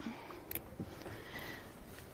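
Quiet room tone in a lecture room during a pause in speech, with one faint sharp click about half a second in.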